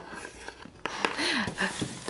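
A cardboard appliance box being picked up and handled: a sharp knock a little under a second in, then rubbing and scraping of cardboard.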